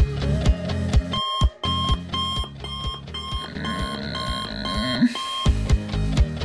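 Digital alarm clock beeping about twice a second, starting about a second in and stopping shortly before the end, over music with a steady beat.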